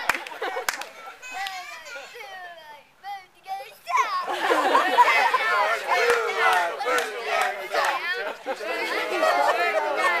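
A group of children's voices singing and calling out together, faint at first and loud from about four seconds in.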